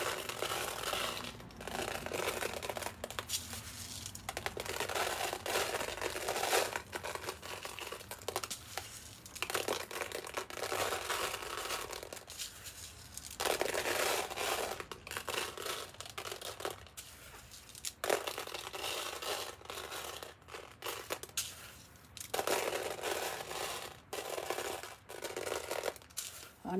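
Crushed mirror glass scattered by hand onto a canvas: gritty rattling and scraping of many small glass chips, in bursts a few seconds long with short pauses between them.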